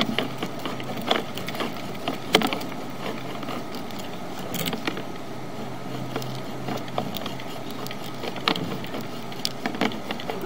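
Sewer inspection camera's push cable being pulled back and wound onto its reel, with irregular clicks and knocks over a steady low hum.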